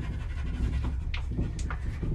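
A Keeshond dog panting in quick short breaths, over the steady low hum of a moving cable car cabin.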